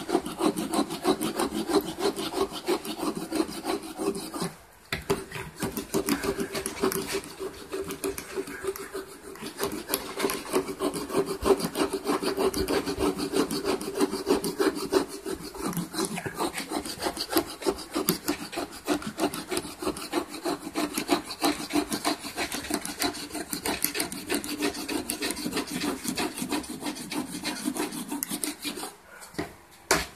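Wire brush scrubbing rapidly back and forth over a wooden surface, scraping away polyurethane finish that comes off in flakes. The strokes pause briefly about five seconds in and stop just before the end.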